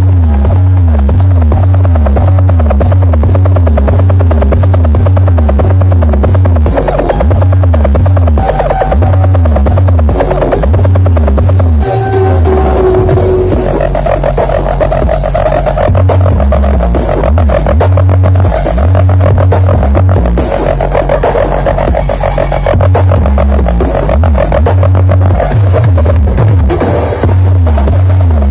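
Electronic dance music played very loud through a large carnival sound system (sound horeg). Heavy pulsing bass dominates, with a repeating swooping tone above it.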